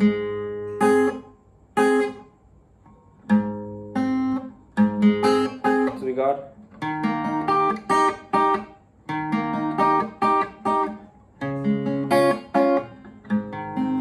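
Acoustic guitar with a capo, picked in a fingerstyle-and-pick pattern over a D, C, G chord progression. A bass note is followed by single plucked strings, then paired B and high-E string plucks that are muted short.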